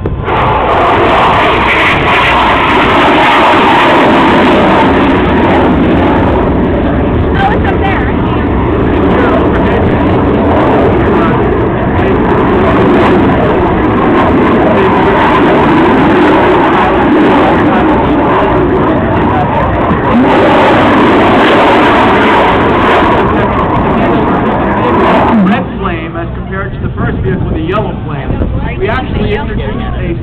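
Rocket plane's Armadillo rocket engine firing overhead as a loud, steady roar that starts abruptly and cuts off suddenly about 25 seconds in.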